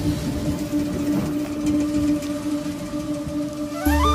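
A Hero scooter's engine runs just after being started, a low rough rumble, under background music holding one steady note. A flute-led tune with a heavy bass comes in near the end.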